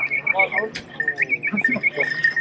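A hunting dog whining in a high pitch: the whine wavers quickly, then holds steady, twice over.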